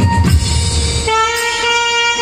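Saxophone playing a film-song melody with keyboard and tabla accompaniment; about a second in it settles on one long held note.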